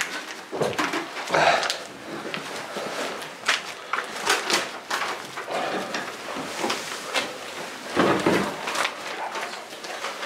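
Minced wild boar meat being pressed and packed down by gloved fingers into an aluminium foil loaf tin so it sits compact: a run of irregular soft squishes and small foil crackles, with a duller knock about eight seconds in.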